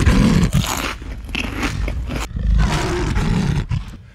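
Tiger roar sound effect, swelling twice: once at the start and again just past the middle, dying away just before the end.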